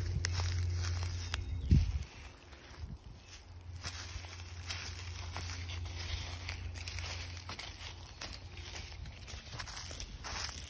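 Footsteps crunching and rustling through dry leaf litter on a woodland floor, several people walking. A low rumble runs underneath, heaviest for the first two seconds, and a single thump comes just before two seconds in.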